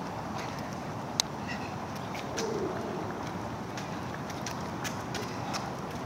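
Racewalkers' shoes tapping lightly and irregularly on the asphalt road as they pass, over a steady outdoor background hiss, with one sharper click about a second in.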